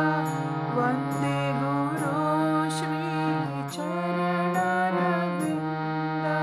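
Harmonium played with hand-pumped bellows: a slow melody of held reed notes over a lower sustained note that steps down about a second in and back up later.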